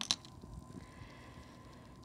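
A single sharp click just after the start, then quiet room tone.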